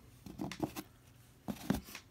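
Hands handling small plastic action-figure parts: light rustles and taps, then a short cluster of sharper clicks as pieces are set down and picked up, about a second and a half in.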